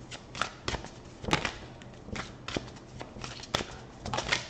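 Tarot cards being shuffled and handled: a run of irregular, sharp flicks and snaps of card stock.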